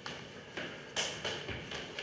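A few sharp slaps of hands striking and checking a training partner's arms and body, the loudest about a second in, with a duller thud midway through.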